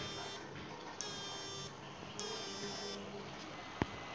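Homemade 12 V-to-high-voltage shock-fishing inverter and transformer giving off a high-pitched whine in repeated bursts, about one every 1.2 s, each starting sharply and sliding slightly down in pitch as the unit pulses its lamp load. A single sharp click comes near the end.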